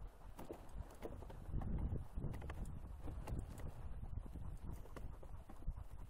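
Paws of two Australian Shepherds pattering in a quick, uneven rhythm on packed snow as they pull a sled, over a low steady rumble of the sled moving over the snow.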